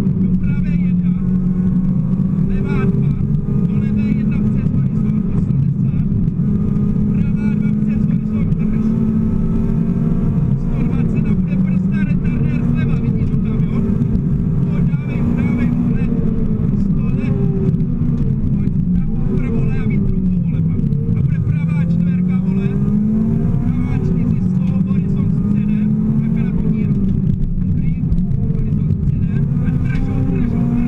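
Honda Civic VTi rally car's four-cylinder engine heard from inside the cabin at stage pace, revs climbing and dropping again and again, with a long fall and climb about twenty seconds in, over steady tyre and road noise.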